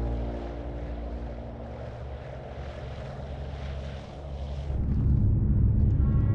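A rushing noise like air through cloud, then about five seconds in the loud low steady drone of a B-24 Liberator's four radial piston engines heard from inside the cockpit.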